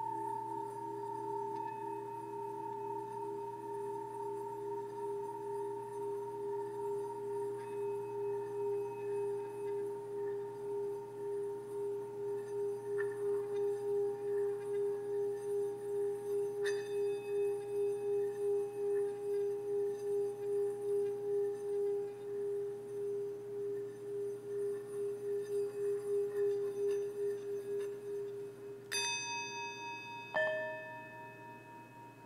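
Small metal singing bowl rubbed around the rim with a wooden stick, holding a sustained singing tone with a slow, even pulsing waver. Near the end a second bowl is struck and rings at a different pitch.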